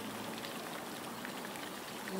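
Fountain water jets splashing down, a steady even splashing.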